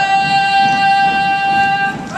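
One long, high-pitched cheering yell from a person in the audience, held on a single steady note for about two seconds.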